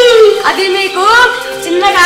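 A high voice in long, drawn-out tones that bend up and down in pitch, somewhere between singing and stretched speech, over background music.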